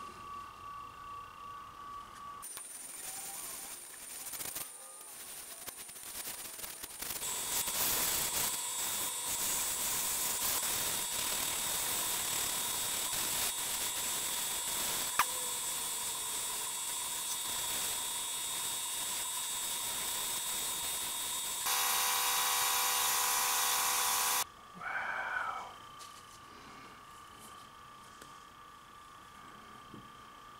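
Wood lathe spinning a resin-and-acorn-cap piece while a sanding stick loaded with abrasive paste is worked against it: a steady sanding hiss with constant high whines, louder from about seven seconds in. Near the end it drops back to a faint steady whine.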